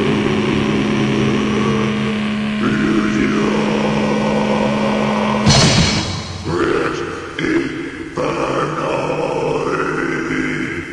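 Lo-fi black/death metal demo recording on cassette: a held low, distorted note, then a sudden crash about halfway through. It gives way to a ragged, noisy passage that breaks up and fades.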